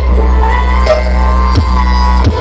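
Dance music played loud through a large outdoor horeg sound-system stack of subwoofer cabinets and horn-loaded tops during a sound check. Deep bass notes are held long, with kick hits dropping in pitch near the start and again over a second in.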